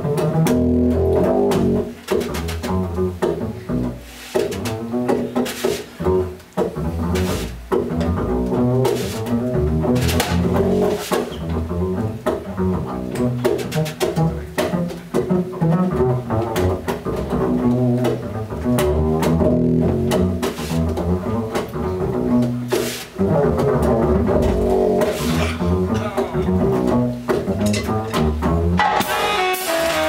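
Live jazz with the upright double bass out front, played pizzicato, over light drums. Just before the end the band comes in fuller, with cymbals.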